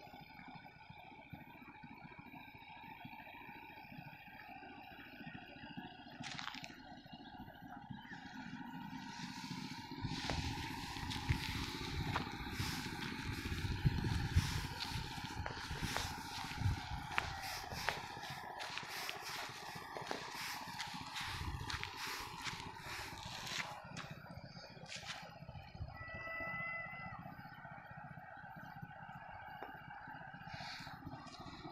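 Rustling and scraping from a handheld phone's microphone as it is moved, with many small knocks and low rumbles for much of the middle stretch. Faint steady outdoor tones sit underneath, and a few short chirps come near the end.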